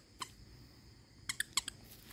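Squeaky plush weasel toy squeaking as a dog bites down on it: one short squeak, then a quick run of three or four squeaks about a second later.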